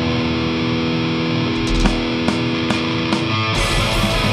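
Live black metal band: distorted electric guitars hold a sustained chord, with single drum strikes joining about halfway through, then the full band with fast drumming comes in near the end.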